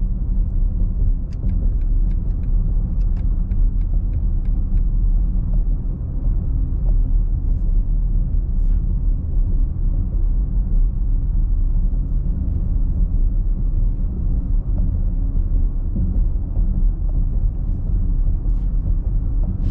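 Steady low road and tyre rumble inside the cabin of an electric BMW iX xDrive50 driving on an old concrete road, with no engine note. A short run of faint sharp clicks comes through about a second or two in.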